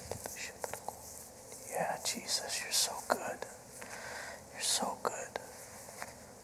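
A man whispering a prayer under his breath: two short whispered phrases, about two and about four and a half seconds in, with small mouth clicks before them.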